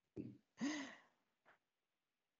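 A person's breathy sigh as laughter dies away: a short voiced breath, then a longer sighing exhale in the first second.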